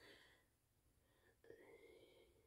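Near silence with a faint whispered voice, once at the very start and again about one and a half seconds in.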